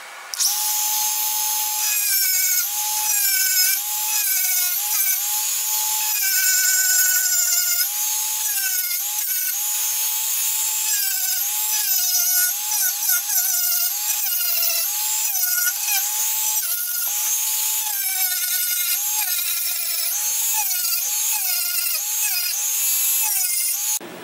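Dremel rotary tool with a cut-off disc cutting grooves into a wooden plaque: a steady high whine whose pitch dips briefly again and again as the disc bites into the wood, over a hiss of cutting.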